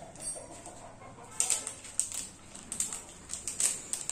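Thin plastic parts pouch crinkling and crackling in the hands as it is opened, in short irregular bursts that grow busier after about a second and a half.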